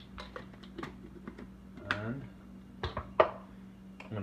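A run of separate clinks and knocks from a small glass blender cup and its plastic blade base being handled on a wooden chopping board, the loudest knock about three seconds in. A brief voiced sound from the cook comes about halfway through.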